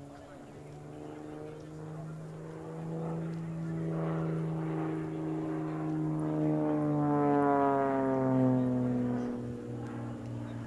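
Single-engine aerobatic propeller plane flying manoeuvres, its engine and propeller note rising and falling in pitch as the power changes. It grows louder towards about eight seconds in, then drops in pitch as it passes.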